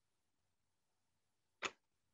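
Near silence broken by a single short, sharp click a little over one and a half seconds in.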